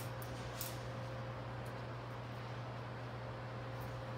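Room tone: a steady low hum and hiss with a faint steady higher tone, and a few faint clicks near the start and again near the end.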